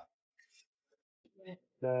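Near silence, then a short faint mouth sound from chewing a mouthful of food about one and a half seconds in, just before a man starts to speak.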